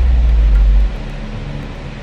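A loud, deep low rumble that cuts off abruptly about a second in, leaving a quieter low hum.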